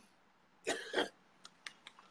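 A woman clearing her throat: one short, rough burst in two pushes, followed by a few faint clicks.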